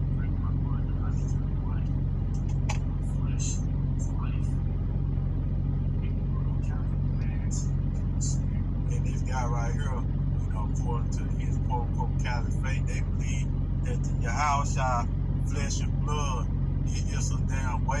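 A steady low hum throughout, with faint, indistinct speech in the background now and then.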